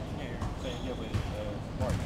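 Basketballs bouncing on a gym floor, with thuds about every 0.7 s, under faint background voices.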